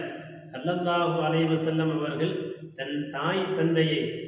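A man's voice chanting in long, steady held notes, in two drawn-out phrases with a brief break in the middle, in the manner of Arabic religious recitation.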